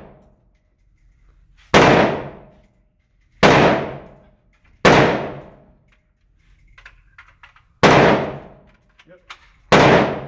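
HK G36 rifle fired in single shots: five sharp reports spaced about one and a half to three seconds apart, each followed by a long echo off the walls of an indoor range.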